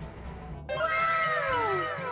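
A long pitched cry that glides slowly downward, repeated in several overlapping echoes. It starts just after a brief dropout about half a second in, sounding like a sound effect edited in.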